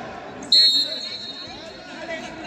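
A referee's whistle, one short, sharp, high blast about half a second in, signalling the start of the wrestling bout, with low chatter in the background.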